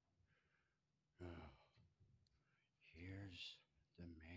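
Near silence broken by two short, quiet, wordless sounds from a man's voice, one about a second in and one about three seconds in.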